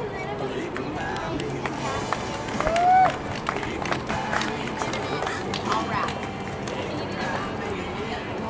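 Background chatter of people talking over music, with soft hoofbeats of a cantering horse on sand footing. About three seconds in comes one loud, short call that rises and then falls in pitch.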